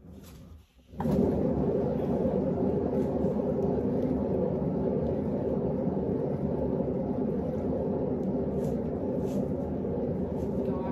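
Motorized canvas spinner switching on about a second in and running steadily, a low whir as it spins the wet acrylic pour.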